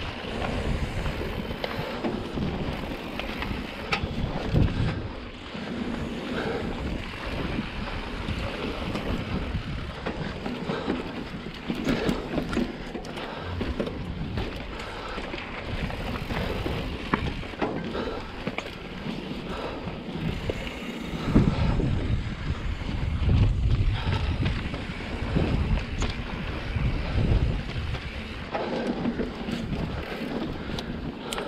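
Mountain bike riding down a rocky sandstone trail: wind buffeting the microphone over the rumble of tyres on rock and dirt, with frequent knocks and rattles as the bike goes over rock ledges, heaviest in the second half.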